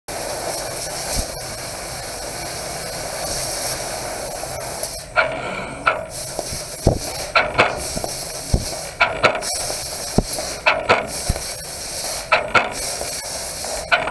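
Fiber laser cutting head cutting 16-gauge stainless sheet, its assist gas hissing steadily for about five seconds. After that the hiss breaks off and comes back in sharp bursts about every second, with short clicks, as the head finishes one cut and starts the next.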